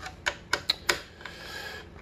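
A screwdriver working the metal mounting screws of a Cooler Master Hyper 212 Evo tower cooler, loosening them to take the cooler off. A quick run of sharp metallic clicks in the first second, then only faint handling noise.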